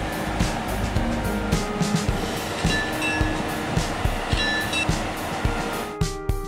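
Trenitalia E402A electric locomotive moving off slowly, its traction equipment giving out steady whining tones that shift pitch in steps, over a regular knocking about three times a second.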